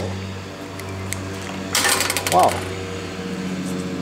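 A short burst of crackling plastic wrap and handling noise about two seconds in, as a new shrink-wrapped dead blow hammer is handled, over a steady low hum.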